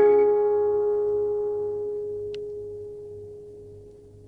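A final piano chord ringing out and dying away slowly. A faint tick comes about two seconds in.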